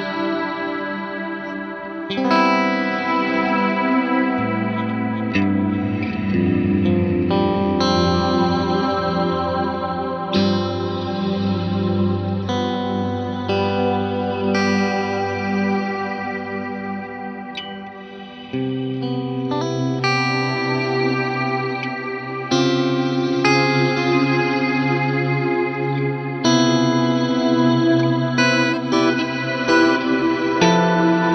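Electric guitar played through an Eventide Blackhole reverb pedal: sustained chords and single notes ringing into a long reverb tail, a new chord every two to three seconds. The sound dips briefly just before a loud new chord about 18 seconds in.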